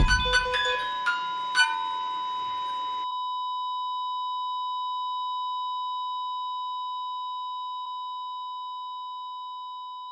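Light chiming music breaks off about three seconds in, leaving a single steady high beep: a heart monitor's flatline tone, signalling that the heart has stopped. The tone slowly fades toward the end.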